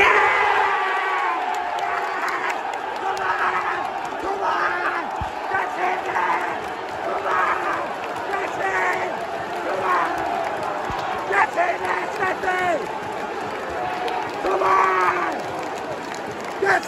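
Football crowd erupting all at once into cheering and shouting at a goal; the roar of many voices keeps going, with nearby yells breaking out above it.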